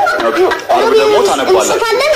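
Speech only: a high-pitched voice talking continuously.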